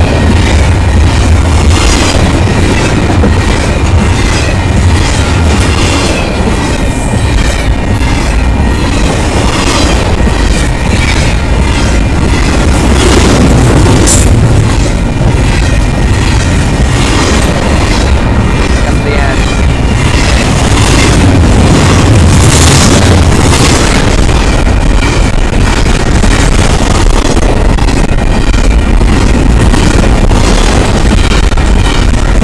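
Double-stack intermodal freight train passing close by at speed: loud, continuous wheel-on-rail noise with a regular clickety-clack as the wheel sets cross the rail joints.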